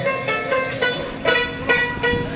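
Instrumental music: a plucked string instrument picks out a melody, note after note.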